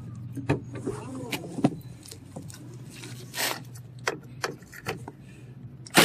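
Handling noise in a car's back seat: scattered clicks and light knocks and a brief loud rustle about three and a half seconds in, over a steady low hum.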